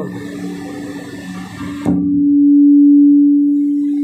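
A steady low electronic hum, a single tone, comes in suddenly with a click about two seconds in. It swells and then eases slightly, while the rest of the room sound drops away.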